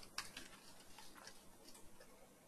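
A few faint computer-keyboard keystroke clicks, spaced irregularly and mostly in the first second.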